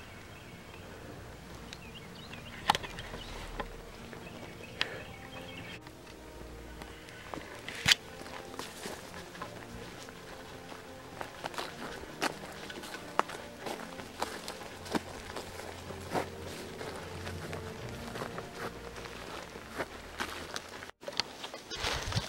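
A hiker's footsteps on a dirt and grass trail, with sharp irregular clicks from steps and camera handling, over faint background music.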